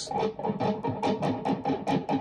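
Electric guitar chords strummed with palm muting, the palm resting lightly on the strings so each stroke is short and choked. The strokes come in a steady, even rhythm of about five a second.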